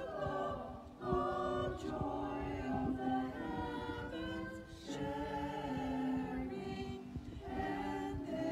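Small vocal group, a man and three women, singing a hymn into handheld microphones, with held notes that change every second or so.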